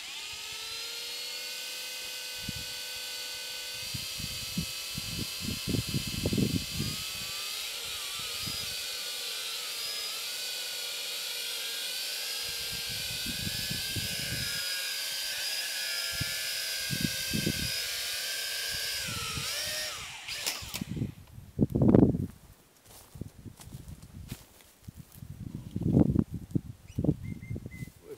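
Toy quadcopter's small electric motors and propellers whining steadily, the pitch wavering up and down from about a third of the way in as the throttle is worked, then cutting off suddenly about two-thirds of the way through. Low bumps come and go underneath, and two louder low thumps follow after the motors stop.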